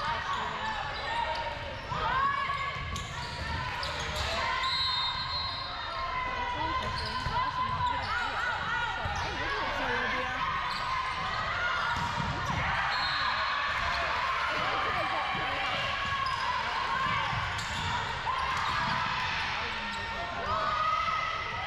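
Volleyball rally in a large gym: sharp hits of the ball and shoes on the hardwood court, under constant voices of players and spectators calling and cheering.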